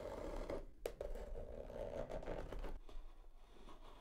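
A scissor blade dragged along the taped seam of a cardboard box, slitting the packing tape: a steady dragging noise with one short click a little under a second in, dying away about three seconds in.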